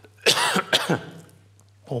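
A man coughing: a short, harsh coughing fit starting about a quarter of a second in and lasting under a second.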